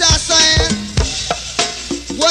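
A live band playing a drum-heavy groove: drum kit kicks and snare hits on a steady beat, with other instruments sounding over them.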